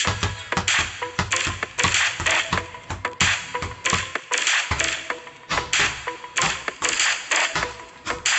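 Background music with a beat, over repeated sharp thuds and taps of two basketballs being dribbled on a concrete floor, about three a second.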